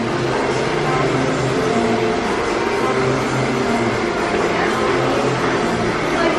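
Steady background whir of a busy blow-dry salon, hand-held hair dryers running, with faint music and voices beneath it.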